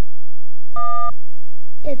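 A single short electronic beep, a steady tone of about a third of a second, about three quarters of a second in; a child's voice starts near the end.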